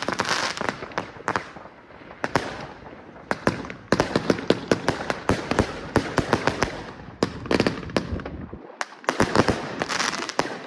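Fireworks going off in quick, irregular succession: a stream of sharp bangs from shots and bursts. The bangs come thickest and loudest from about four seconds in.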